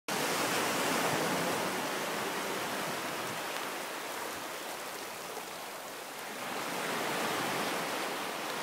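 Small sea waves breaking and washing up over sand at the water's edge, a steady hiss of surf and foam. It eases a little past the middle and swells again as the next wave comes in.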